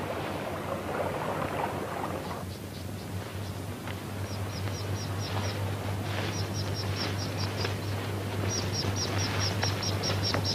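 Crickets chirping in quick runs of short high chirps, about six a second, starting a few seconds in, over a steady low hum.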